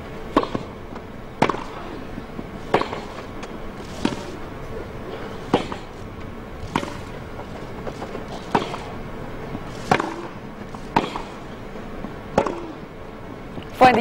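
Tennis ball struck back and forth in a baseline rally, about ten crisp racquet hits one to one and a half seconds apart, over a low, steady crowd hush.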